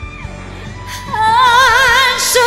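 Karaoke backing music, then about a second in a woman's singing voice enters on a held, wordless note with a wide vibrato, much louder than the backing.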